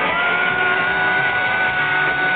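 Rock band playing live in an arena, heard from the crowd: a single high note is held steady over a steady drumbeat of about four beats a second.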